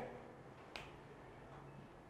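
Quiet room tone with a single faint click about three-quarters of a second in.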